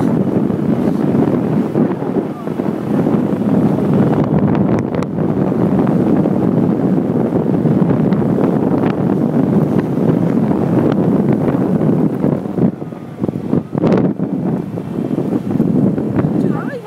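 Wind buffeting the phone's microphone while riding a 50cc moped along the street, with the moped's small engine running underneath. The rush dips for a moment near the end.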